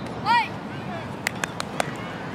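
Outdoor sideline sound during a youth flag football play: one short high-pitched shout about a third of a second in, then a few sharp clicks about a second later, over faint background chatter.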